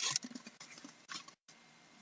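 Cardboard box being opened by hand. A sharp scrape of cardboard comes at the start, then about a second of crackly rustling and small clicks from the flaps, fading after that.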